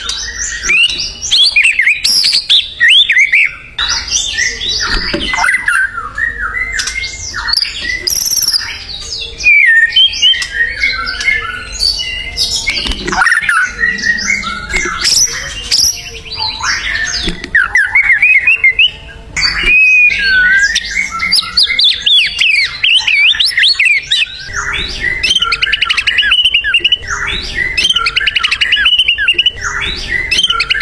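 White-rumped shama (murai batu) singing continuously: a long, varied run of rich whistled phrases that sweep up and down, turning to fast trills in the last few seconds.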